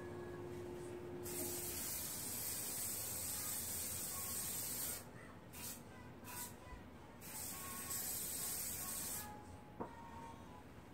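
Aerosol spray can hissing in two long sprays of about four and two seconds, with a few short puffs between them, then a single sharp click near the end.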